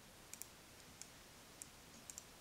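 Knitting needles clicking faintly as stitches are worked along a row: a few light, sharp taps spread out, with room quiet between them.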